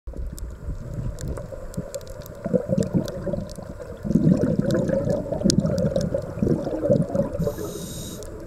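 Underwater sound through a camera housing: a scuba diver's exhaled bubbles gurgling in bursts, a short one about two and a half seconds in and a longer run from about four to seven seconds, with scattered sharp clicks throughout.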